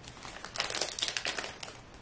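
Hands handling hockey trading cards and their packaging: a close run of crinkling and rustling starting about half a second in and lasting about a second, then dying down.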